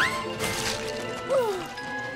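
Cartoon background music with a crash sound effect, the animated engine's wheels clattering on the rails about half a second in, and a falling glide a little past the one-second mark.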